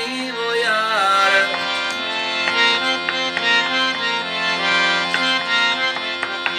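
Harmonium playing the melody between sung verses of a Sindhi Sufi song, with one long sung note trailing off about a second and a half in. Hand-drum strokes fall under the melody.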